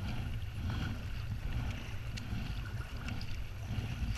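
Water lapping and sloshing against a plastic sit-on-top kayak's hull as it is paddled along, over a low steady rumble.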